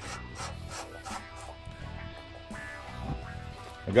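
Background music, with a faint rubbing and scraping as a garden hose's brass coupling is screwed by hand onto the water heater's plastic drain valve threads.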